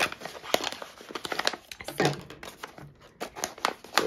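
Resealable tool-kit pouch crinkling and rustling in the hands as small tools are worked out of it, with light clicks as a plastic applicator pen and tweezers are set down on a wooden table. It is a tight squeeze to get everything out.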